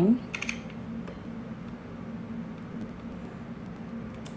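Computer mouse scroll wheel ticking in faint, irregular clicks over a steady low electrical hum.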